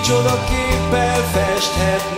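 Live worship band playing a song: a man singing in Hungarian over acoustic guitar, electric bass and drums, with steady drum hits and sustained bass notes.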